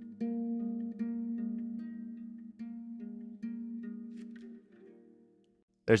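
Small classical-style acoustic guitar played fingerstyle, closing a song: single plucked notes and chords ring out and decay one after another, then fade away near the end.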